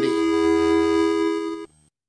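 A held electronic synthesizer chord ends a short segment jingle, then cuts off abruptly shortly before the end, leaving a brief silence.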